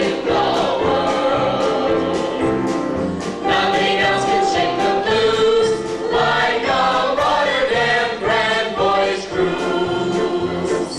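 A group of singers performing a song together with instrumental accompaniment and a regular bass beat.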